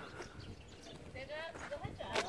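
A faint, high-pitched voice of someone a little way off, rising and falling for under a second about halfway through, over quiet background.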